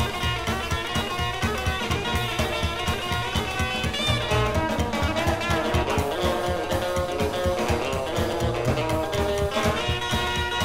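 Instrumental break of a pop-rock song, led by guitar over bass and drums with a steady beat.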